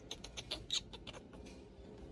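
Baby macaque giving a quick series of short, high-pitched squeaks in the first second, the loudest just under a second in, while it is held and handled.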